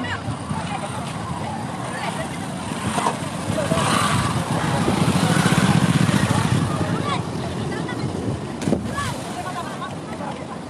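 A steady, rushing outdoor noise with a low rumble, loudest in the middle, with people's voices faintly over it.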